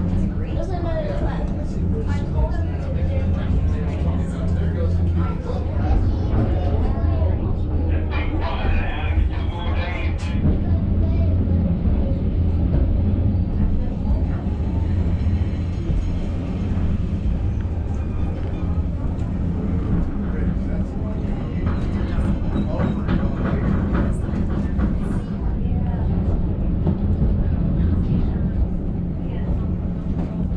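Lookout Mountain Incline Railway car running along its track, a steady low rumble heard from inside the car, with passengers talking over it.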